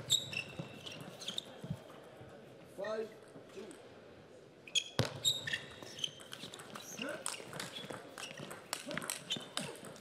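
Table tennis rally: a celluloid-plastic ball clicks off rackets and the table in quick succession, mostly in the second half, with shoe squeaks on the court floor. A brief shout comes about three seconds in.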